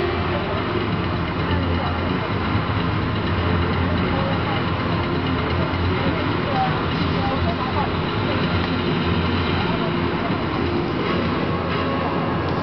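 Steady sports-hall background noise: indistinct voices murmuring over a constant low rumble.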